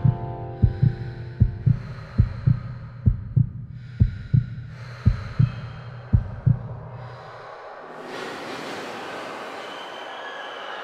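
Heartbeat sound effect: pairs of low lub-dub thumps about once every 0.8 seconds over a low hum, stopping about seven seconds in. A rushing noise then swells in.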